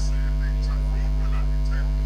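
Steady electrical mains hum: a low, unchanging drone with a ladder of overtones above it.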